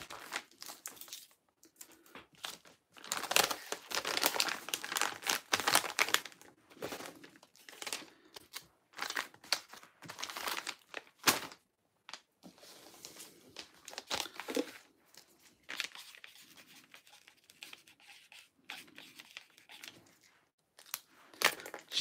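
Paper padded mailer being handled, with irregular crinkling, rustling and tearing sounds.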